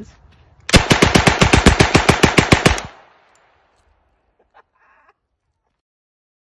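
An M3 "grease gun" .45-calibre submachine gun firing one full-auto burst: about twenty shots at a slow, even rate of roughly nine a second, lasting about two seconds. An echo trails off after the last shot.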